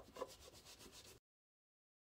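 Very faint rubbing of a damp cloth rag over the rim of a glass plate, cutting off suddenly just over a second in.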